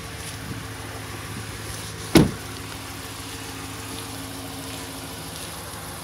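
Pickup truck engine idling with a steady hum, and a single sharp thump about two seconds in.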